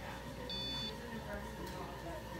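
A single short electronic beep, one steady high tone about half a second in, over quiet room tone with a faint steady hum.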